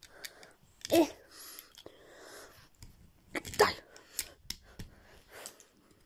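Faint handling of a plastic Transformers Tigatron action figure being transformed, with a few small clicks and scrapes as its chest is worked loose. Two short vocal grunts come about a second in and again past the middle.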